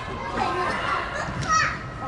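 Girls' voices calling and shouting during an indoor soccer game, heard across a large hall, with one louder falling call about a second and a half in.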